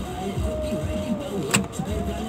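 Radio audio, a voice with some music, playing inside a stopped vehicle's cabin over the low, steady hum of its engine. A sharp click comes about one and a half seconds in.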